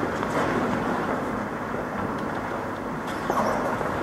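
Steady background noise of a large church with people shuffling and moving about, and a couple of faint clicks about three seconds in.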